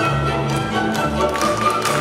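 Recorded orchestral ballet music with strings. From about a second and a half in, it is joined by sharp taps, the hard toes of pointe shoes striking the stage floor.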